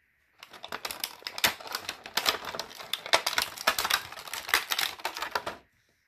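Stiff clear plastic packaging crackling and clicking as an action figure is handled and worked out of it: a fast, irregular run of sharp clicks and crinkles that stops shortly before the end.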